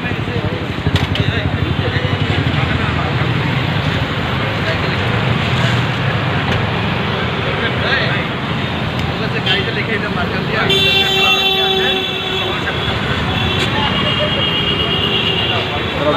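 The electric soft top of a Porsche 718 Boxster closing, under steady street traffic noise and background voices. A vehicle horn toots once for about a second, about two-thirds of the way through.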